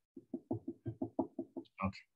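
A quick run of about a dozen soft knocks or taps, roughly eight a second.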